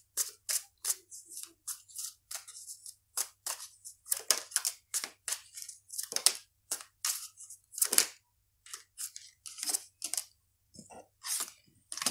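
Tarot cards being shuffled by hand: a quick, irregular run of papery snaps and rasps as the cards slide over one another, with a short pause about ten seconds in.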